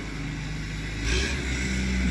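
A vehicle engine running steadily, growing louder about a second in, with a short hiss.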